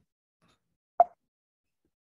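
A single short, sharp pop about a second in.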